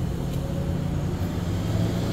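A steady low mechanical hum, even and unchanging, with no speech over it.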